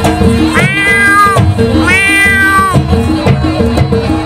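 Jaranan gamelan music with drums and a repeating chime pattern, over which two long meow-like calls ring out, the first about half a second in and the second about two seconds in, each rising, held and then dropping away.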